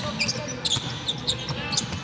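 Basketball being dribbled on a hardwood court: a series of short bounces.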